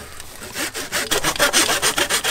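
Hand saw with a stiffened back cutting through a living tree branch close to the trunk, in quick, regular back-and-forth strokes, about four or five a second, getting louder after the first half second. It is the final cut of a three-cut pruning, made once the branch's weight has already been taken off.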